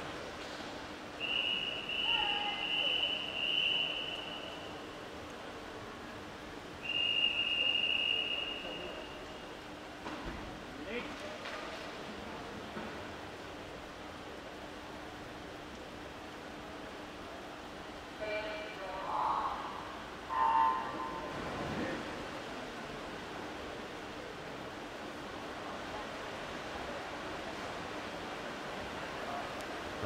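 The start of a swimming race in an indoor pool: two long, high whistle blasts from the referee, then about 18 seconds in a brief starter's call and the electronic start beep, followed by even hall noise once the swimmers are away.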